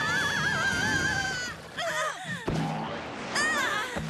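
Cartoon sound effect of a punctured bubble shooting off like a released balloon: a high, wavering squeal of escaping air that stops about a second and a half in. Short rising-and-falling squeals follow twice, over background music.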